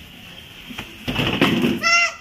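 Low background for the first second, then a short rough noise about a second in, followed near the end by a child's high-pitched yell.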